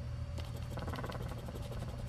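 Edge of a poker-chip scratcher scraping the latex coating off a scratch-off lottery ticket, in a quick run of fine scraping strokes.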